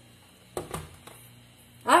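A pink plastic mixing bowl of dry seasoning is set down on a countertop: a couple of brief soft knocks about half a second in.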